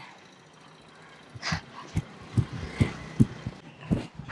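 Running footsteps on pavement, starting a little over a second in and keeping a steady pace of about two and a half footfalls a second.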